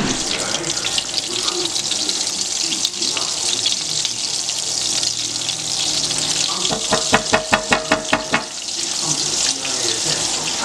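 Oil and butter sizzling steadily in a hot electric skillet. About seven seconds in, a quick rattle of about ten ticks lasts a second and a half.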